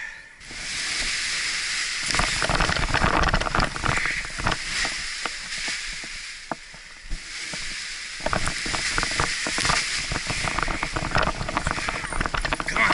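Wind buffeting the action camera's microphone in gusts, with the nylon paraglider wing's fabric rustling and flapping as it fills and rises overhead. A steady hiss sets in about half a second in, and the irregular rumble and cracking grows much louder about two seconds in, eases briefly, then returns near the end.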